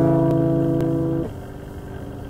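The closing strummed chord of an acoustic guitar ringing steadily, then damped by hand about a second and a quarter in, leaving only a faint fading ring.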